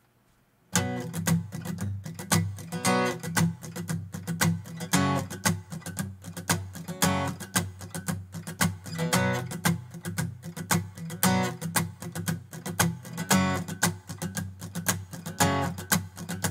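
Acoustic guitar strummed in a steady rhythm as the instrumental intro to a song, starting about a second in after a moment of silence.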